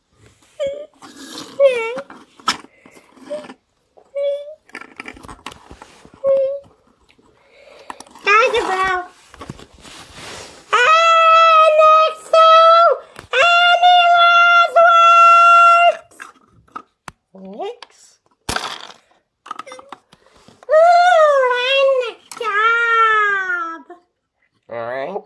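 A child's voice making wordless sound effects for toy play: short cries, then several long, held high notes through the middle, and sliding, wavering cries near the end. A single sharp click comes about three quarters of the way through.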